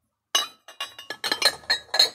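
Ceramic dishes clinking against each other as stacked plates and mugs on a store shelf are handled: a quick run of sharp, ringing clinks starting about a third of a second in.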